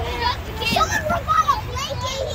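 Children's voices chattering and calling out over one another, high-pitched and overlapping, over a steady low rumble.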